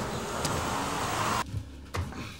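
A car passing on a street, its tyre and engine noise swelling, then cut off suddenly about one and a half seconds in, leaving quieter room tone.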